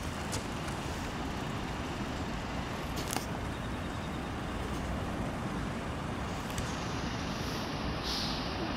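Steady hum of distant city road traffic, with a few faint clicks.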